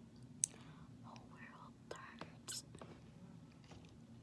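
A girl's soft whispering, with a sharp click about half a second in and a few softer clicks near the middle, over a low steady hum.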